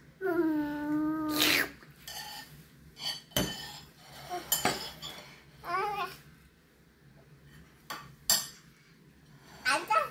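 A toddler's drawn-out vocal sound, about a second and a half long, rising in pitch at its end, followed by a few sharp clinks of utensils against a steel pot and plate and another short babble.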